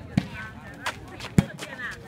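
A volleyball being struck by hands three times as the serve and first contacts of a rally go in, the third hit, about 1.4 s in, the loudest, over faint crowd voices.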